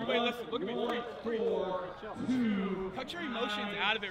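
Men's voices talking indistinctly in a close group, at a moderate level. Near the end one man's voice starts speaking up clearly.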